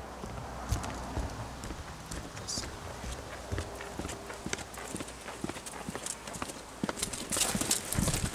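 Footsteps of two people walking on an asphalt railway platform, a run of short scuffing steps that get louder near the end as the walkers come close.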